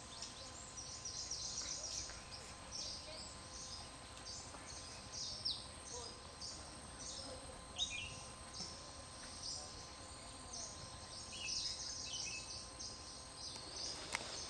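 Small birds chirping over a low background hiss: many short, high chirps scattered throughout, with a few quick falling notes.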